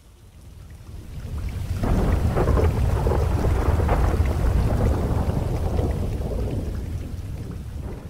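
Rain with a long roll of thunder: the rumble swells about a second in, stays loud through the middle, and slowly fades toward the end.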